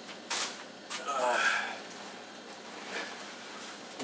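A short rustle near the start as groceries are pulled out of a backpack, then a brief murmur of a man's voice and faint handling noise.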